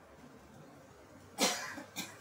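A person coughs once, sharply, about one and a half seconds in, with a shorter second cough at the very end.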